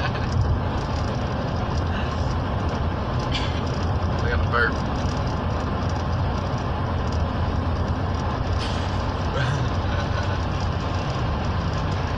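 Steady road and engine noise inside a moving car's cabin, a low rumble with an even hiss over it.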